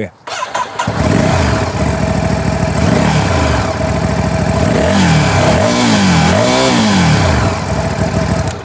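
Ducati Scrambler 1100 Tribute Pro's air-cooled 1079 cc L-twin starting, catching about a second in and idling through its stacked twin silencers with a deep, bassy exhaust note. Then three quick throttle blips rise and fall in pitch before it settles back to idle.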